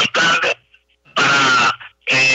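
A person's voice in two short bursts of about half a second each, with a brief pause between.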